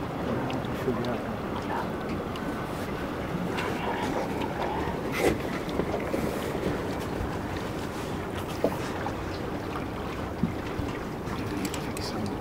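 Wind on the microphone and water moving around a small boat, a steady rushing noise, with a few light knocks.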